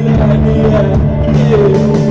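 Live post-punk band playing loudly: electric guitar and bass holding sustained notes over drum and cymbal hits in a steady beat, with little or no singing.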